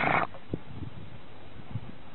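Pug breathing close to the microphone: a short, noisy breath right at the start, then a few faint low sounds over a steady hiss.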